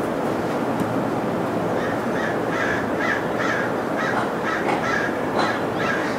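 A video's outdoor soundtrack played over loudspeakers: a steady background hiss with a bird calling in short repeated notes, about three a second from about two seconds in.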